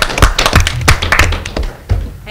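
A small group applauding: quick, irregular hand claps that thin out and fade near the end.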